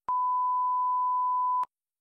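Colour-bar test tone: one steady, pure reference beep near 1 kHz, lasting about a second and a half, with a click as it starts and as it cuts off.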